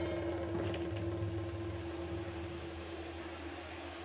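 A single sustained low note from the stage music's electronic keyboard, held over from a falling sweep effect and slowly fading, over a faint steady hum from the sound system.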